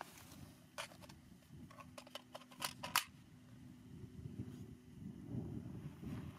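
Quiet handling noises: a string of sharp, short clicks in the first half, the loudest about three seconds in, over a faint steady hum.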